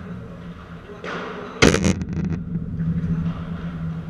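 A padel ball hit hard about one and a half seconds in: one loud, sharp crack that rings briefly in the hall, followed by a few fainter clicks.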